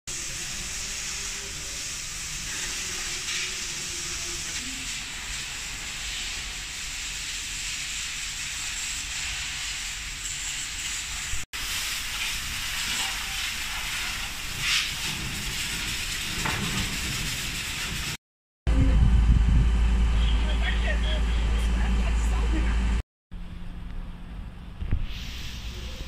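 Water from a fire hose hissing steadily onto a burning patch of brush, with scattered faint crackles. Near the end a much louder low rumble takes over for about four seconds.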